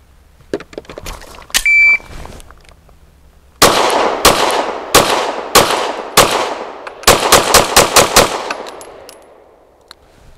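A shot timer beeps once. Under two seconds later a Rost Martin RM1C 9mm pistol fires a measured string of about six shots, roughly two-thirds of a second apart. A quick string of about six more follows, with splits of about a fifth of a second, and each shot has a trailing echo.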